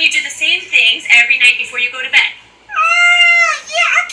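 High-pitched Sesame Street character voices from a television, followed by one long drawn-out high-pitched call about three seconds in.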